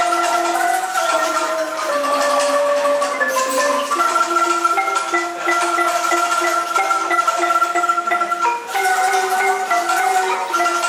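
A ranat ek, the Thai boat-shaped wooden xylophone, played with mallets: a continuous melody struck in octaves, the notes moving step by step.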